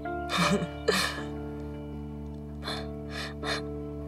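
Soft background music of steady sustained tones. A few short breathy vocal sounds come about half a second in, at one second, and again near three seconds.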